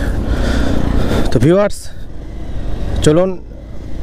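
Motorcycle engine running with road noise while riding at low speed, with two short spoken syllables over it.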